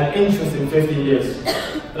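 A young man's voice at a podium microphone, in short broken vocal sounds.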